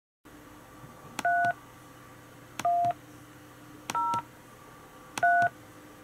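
Four telephone keypad (DTMF) tones dialed from Skype's on-screen dialpad, one about every 1.3 seconds, for the digits 3, 1, 0, 3. Each tone lasts about a third of a second and comes just after a click, over a faint steady hum.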